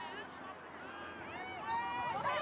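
Distant shouts and calls from players and onlookers on an outdoor soccer field, several voices overlapping over the open-air background noise.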